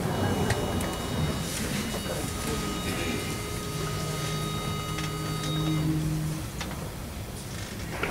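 Hall room noise with shuffling and small knocks as a men's chorus moves into position, with faint held notes sounding from about two seconds in to about six seconds in, the chorus taking its starting pitch.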